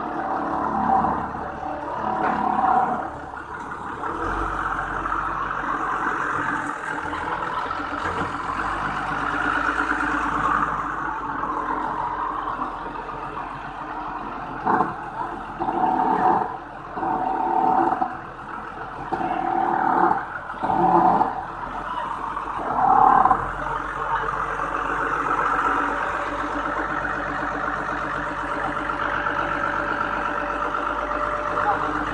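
TCM forklift engine running steadily under load as it carries and sets down a stack of steel plates. Several brief louder bursts stand out over it, the loudest a little past the middle.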